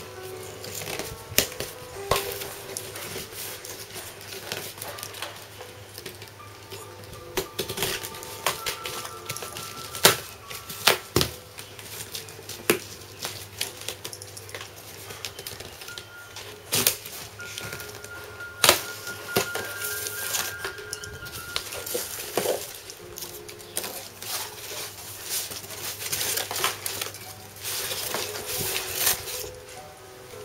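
A cardboard box being unpacked by hand: sharp snips and clicks as plastic strapping bands are cut, scrapes and knocks of cardboard flaps, and rustling of packing material. Quiet music plays underneath.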